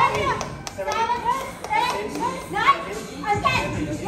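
Excited, high-pitched voices of several people shouting over one another in a large gym hall.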